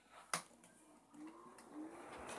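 A single sharp click as a pedestal fan's switch is pressed, then a faint hum rising in pitch as the fan motor spins up.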